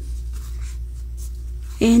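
Faint scratchy rustling of a crochet hook being worked through super bulky yarn, over a steady low hum.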